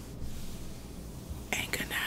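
Low room noise, then a brief breathy whisper about a second and a half in.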